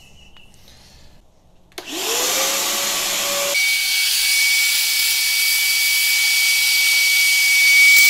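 A shop vacuum switched on about two seconds in, its motor spinning up to a steady loud whine. About a second and a half later a thin high whistle joins as the hose nozzle sucks around the bare crankcase top of the motorcycle engine.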